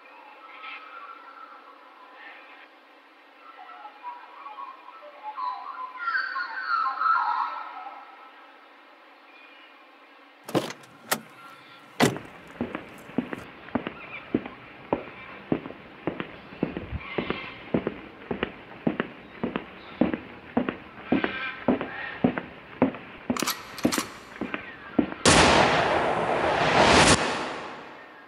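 A collage of sound-effect samples: a soft nature ambience, then a car door shutting with two knocks about ten seconds in. Steady footsteps follow at about two a second, and near the end comes the loudest sound, a burst of noise lasting about two seconds.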